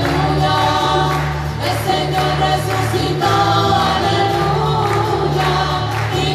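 Choir singing a hymn with instrumental accompaniment, held bass notes that change about once a second beneath the voices.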